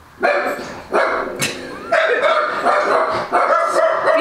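Small mixed-breed house dogs (beagle, chihuahua and terrier mixes) barking repeatedly in quick bursts, alerting at something going by outside, which the owner guesses was a trash bag rolling past.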